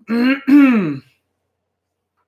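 A man clearing his throat: a voiced, two-part "ahem" about a second long.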